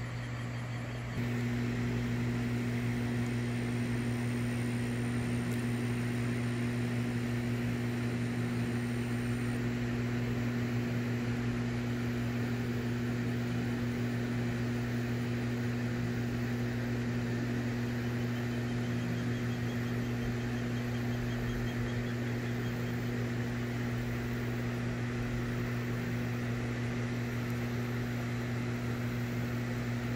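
Deep, steady electrical hum with a couple of higher overtones from a hydroelectric dam's power equipment, growing louder and fuller about a second in.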